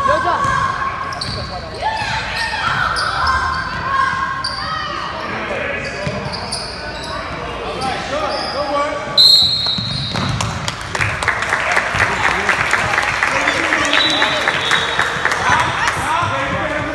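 Gym sounds of a youth basketball game: sneakers squeaking on the hardwood court and a basketball bouncing, with spectators' voices in a large echoing hall. A referee's whistle blows sharply about nine seconds in, and a dense rapid patter follows to the end.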